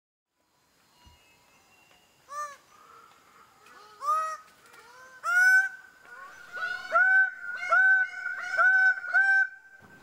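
Male Red Bird-of-Paradise giving loud advertising calls. After about two seconds of quiet come three single calls, then a faster run of about six calls near the end, each one rising quickly and then held.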